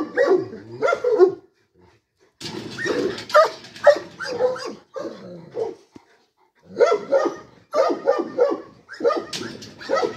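Dog barking in quick runs of short barks, breaking off briefly about two seconds in and again around six seconds in.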